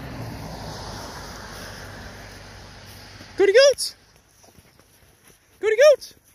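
A man's voice calling goats in short, loud, high sing-song calls, twice in the second half. Before them, a soft rustling hiss that fades out.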